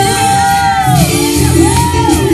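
Upbeat Latin dance music, with a voice holding one long high shouted note that ends about a second in, followed by shorter swooping calls.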